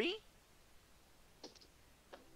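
A voice finishes the word "three", then near quiet with one short, sharp click about one and a half seconds in.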